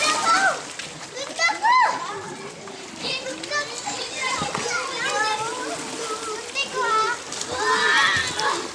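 Children shouting and squealing at play in a swimming pool, several high voices overlapping, with water splashing.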